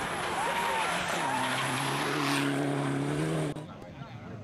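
Rally car engine held at high revs as the car passes on a wet, muddy gravel stage, with a loud rush of tyre and spray noise and spectators' voices calling out in the first second or so. The sound cuts off suddenly near the end.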